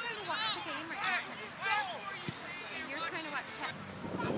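Sideline spectators' voices: a laugh, then indistinct chatter and calls.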